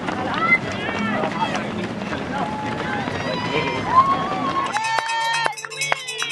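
A crowd of spectators cheering and shouting, with high whoops. Near the end a handheld cowbell is shaken in rapid, even strokes, along with clapping.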